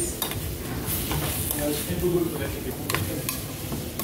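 Pulled lamb sizzling in a frying pan of lamb juice, stirred with a metal spoon that scrapes and clicks against the pan a few times.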